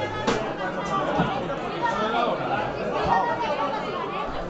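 Indistinct chatter of several people talking at once, with a single sharp knock just after the start.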